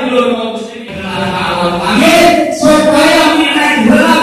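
A man's voice chanting melodically into a microphone over the loudspeakers, with long, slowly gliding held notes.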